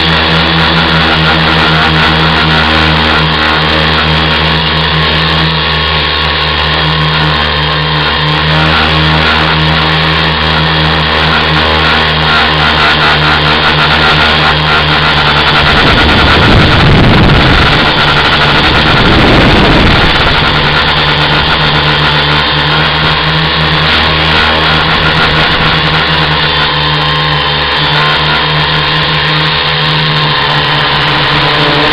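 Tricopter's three electric motors and propellers running steadily, heard close on the craft's own camera microphone. Between about 16 and 20 seconds in, a rushing noise swells over the motor sound and then fades, as the craft banks hard.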